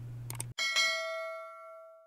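A single bell-like ding from a subscribe-button animation's notification-bell sound effect. It strikes about half a second in, after a faint click or two, and rings with several clear tones that fade away over about a second and a half.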